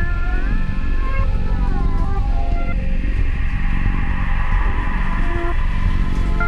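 Instrumental rock music from a band, loud throughout: sustained, heavily distorted notes that slide up and down in pitch between held tones over a thick, dense bass and drum bed.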